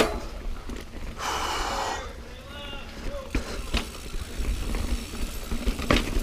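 Mountain bike rolling fast over a dirt singletrack: sharp knocks and rattles from the bike over the rough trail, over a steady low rumble of wind and ground noise on the camera. A short hissing burst comes about a second in, and a faint voice about halfway through.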